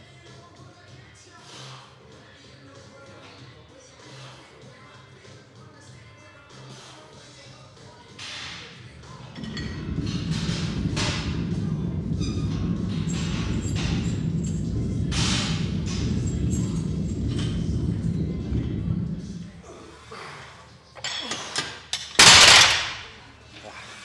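A set of heavy incline dumbbell presses with 55.3 kg dumbbells: short sharp sounds of effort and a loud low rumble for about ten seconds in the middle. Near the end the dumbbells are dropped to the floor with one very loud thud, after a few smaller knocks.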